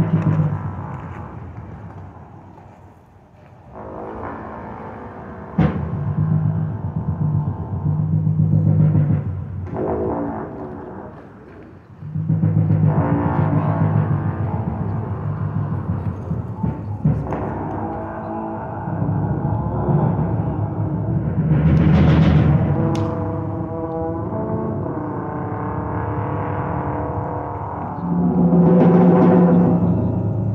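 Live improvised jazz from a trio of trombone, keyboard and drums, with the trombone playing low held notes over drum hits. The music gets suddenly louder about five and a half seconds in and again about twelve seconds in.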